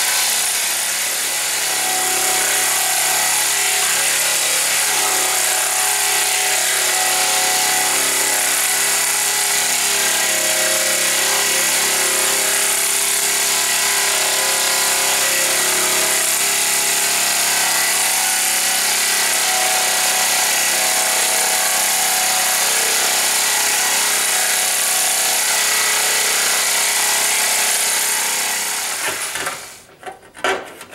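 Power hammer running continuously, its dies rapidly hammering a sheet-metal panel being shaped, then stopping about a second before the end.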